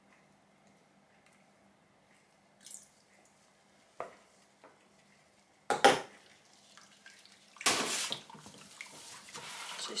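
Liquid cold-process soap batter stirred with a wire hand whisk in a plastic bucket: a wet swishing and scraping that starts a little past halfway, after a sharp knock. Before that it is nearly quiet, with a few faint clinks.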